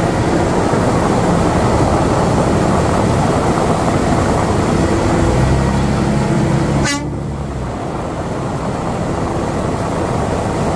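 Truck-mounted slurry seal machine running loud and steady: engine and mixing machinery. About seven seconds in, the sound drops abruptly to a quieter steady running.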